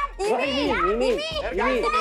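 Children's voices shouting directions over one another, high-pitched and excited.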